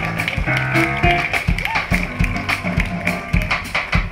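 Live jazz band playing, with drum kit hits over shifting low bass notes and piano.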